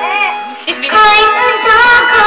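A child singing a song over an instrumental backing track. The voice drops away briefly early on and comes back in strongly about a second in.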